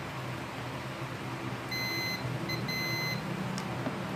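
Multimeter's continuity beeper sounding as its probes bridge a conductor of a rice cooker power cord: a steady high-pitched beep about half a second long, a short blip, then another half-second beep, signalling that the wire is intact.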